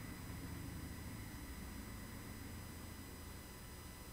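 Faint steady low hum and hiss of room tone, slowly fading, with no distinct sound of activity.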